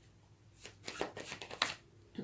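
A deck of playing cards handled and shuffled: a quick run of sharp card clicks and snaps beginning about halfway in, after a quiet start.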